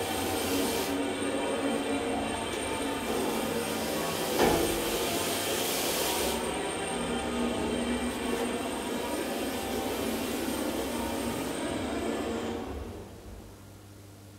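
1991 KONE hydraulic elevator car travelling in its shaft: a steady mechanical hum with a high whine, and one knock about four and a half seconds in. The running noise fades away as the car slows and stops about a second before the end.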